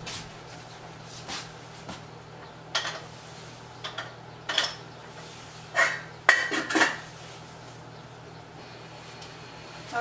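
Glass cups and a metal pot clinking and knocking at the stove, a series of separate sharp clinks with the loudest about six seconds in.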